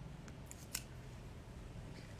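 Faint eating sounds: a bite of food taken and chewed, with a few small crisp clicks in the first second over a low steady hum.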